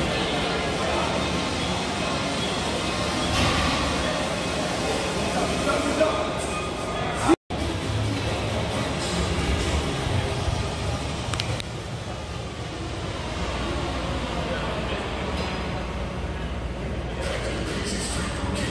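Busy gym ambience: background music playing over indistinct chatter from people around the hall. The sound cuts out for an instant about seven seconds in.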